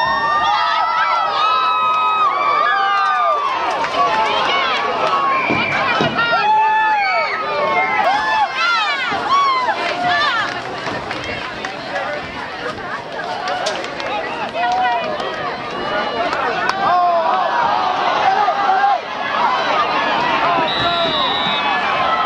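A crowd of many high-pitched voices shouting and cheering over one another, loud and continuous, as a football play is run.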